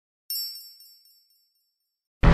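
A single bright, high chime of a logo sting, struck about a third of a second in and fading away within a second.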